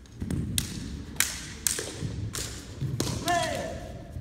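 Competition naginata in a bout: a rapid series of sharp clacks from the weapons striking each other and the armour, with thumps of feet on a wooden floor, and a long shout (kiai) about three seconds in.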